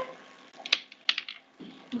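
Computer keyboard typing: a quick burst of about six key clicks a little under a second in.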